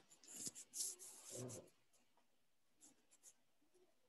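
Near silence, with a few faint short rustling and scratching sounds in the first second and a half from the soundtrack of a puma video clip played over the call.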